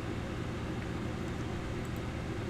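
Steady background hum and hiss of the recording room, with a faint steady tone in the middle range.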